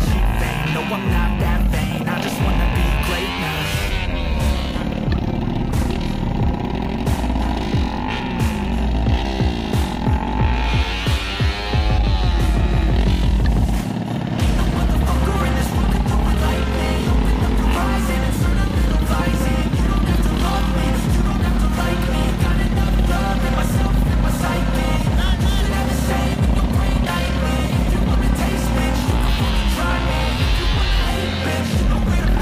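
Two drag-race motorcycles, a Suzuki Raider F.I and a trail bike, revving at the start line: repeated throttle blips rising and falling in pitch. Background music with a steady beat plays over them.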